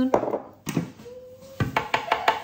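A metal teaspoon tapping several times in quick succession against the rim of a blender jug near the end, knocking mustard off into the tofu.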